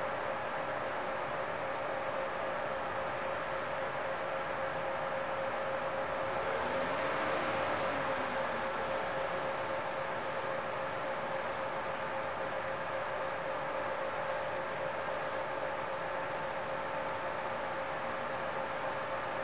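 Steady mechanical hum with a constant whine. It grows louder for a couple of seconds about seven seconds in, with a faint rise and fall in pitch.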